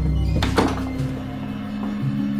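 Background music of low sustained tones, with a single heavy thunk about half a second in.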